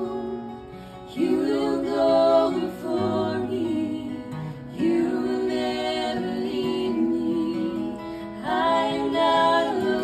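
Male and female voices singing a slow worship song in close harmony over a strummed acoustic guitar, in three sung phrases with short breaths between them.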